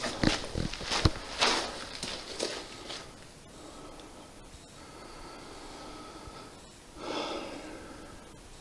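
Rustles and knocks of a handheld camera being moved about, then a quiet stretch, and a man's loud breath out through the nose about seven seconds in.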